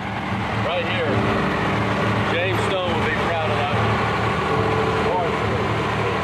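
An engine running steadily at idle, a low droning hum, with voices calling over it a few times.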